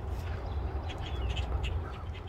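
A flock of birds in bare trees calling, with a few short, faint calls about a second in, over a steady low rumble.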